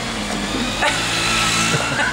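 A motor vehicle going by on the street, its steady engine hum growing louder from just under a second in.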